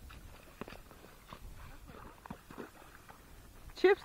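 A horse walking through shallow creek water: faint, irregular hoof splashes and clicks over a low rumble of wind.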